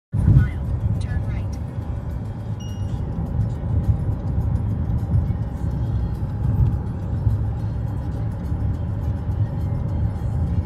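Steady low rumble of a moving car's road and engine noise, with music playing over it.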